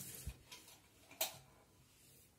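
A wall light switch flipped on with one sharp click about a second in, after a couple of faint ticks.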